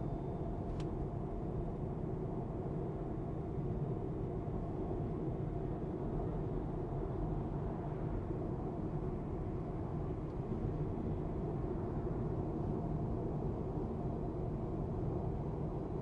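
Steady road and tyre noise heard inside the cabin of a 2023 Tesla Model 3 Performance cruising on the freeway at about 60 to 66 mph: an even low rumble with no engine note.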